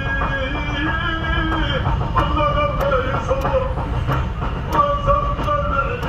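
Men's voices chanting a devotional praise song (madih) in long held, sliding notes, with sharp percussive taps about every two-thirds of a second, over the low steady rumble of a car driving on the highway.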